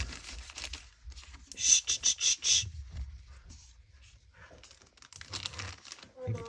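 Paper rustling and crinkling as journal pages and paper pieces are handled and slid into place, with a quick run of about five loud rasping strokes about two seconds in and more rustling near the end.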